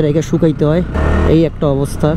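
A man talking while riding, over the steady low running and road noise of a motorcycle in city traffic, with a brief louder rush about a second in.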